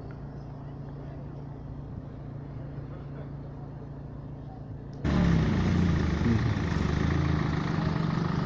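Street sound in the cold outdoors. A low steady hum runs for about five seconds, then the sound jumps suddenly to a louder noise with a car engine running nearby.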